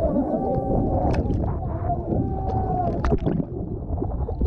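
Children and adults screaming and wailing in distress in a small boat at sea, over a heavy rumble of wind and sea. A few sharp hits come about a second in and near three seconds.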